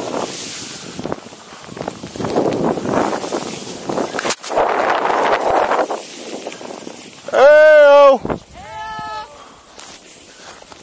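Hiss and rush of snow under a rider carving through deep powder, with wind on the microphone. About seven and a half seconds in comes a loud wavering whoop, followed by a second, fainter one.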